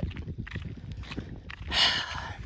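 Wind rumbling on the microphone while walking, with soft footsteps, then a loud breath near the end.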